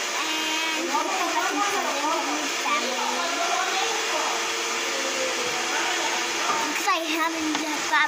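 A girl's wordless voice, with hums and sounds that rise and fall in pitch, over a steady rushing background noise; she makes the sounds while eating spicy noodles and reacting to the heat. Her voice goes quiet for a moment after about five seconds and comes back near the end.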